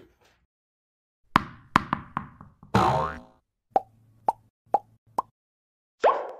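Cartoon-style sound effects for an animated logo: a quick run of plops falling in pitch, a short whoosh with a rising sweep, then four short pops about half a second apart.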